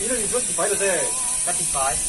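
A man speaking, over a steady high hiss.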